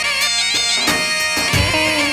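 Loud dance music with a reedy wind-instrument melody, held and ornamented with wavering turns, over a drum beat, with two heavy drum strikes in the second half.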